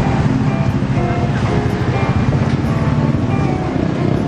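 Street noise on a busy city road: music playing, with a vehicle engine running close by as a low, steady rumble.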